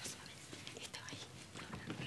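Faint whispering voice.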